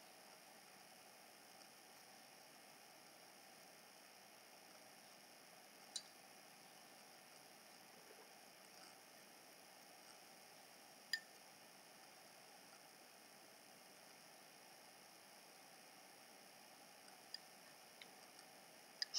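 Near silence: faint room tone with a couple of brief, faint clicks, one about six seconds in and another about eleven seconds in.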